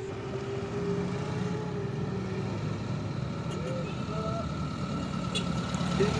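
A motor vehicle's engine running steadily at low revs, a small pickup truck on the road.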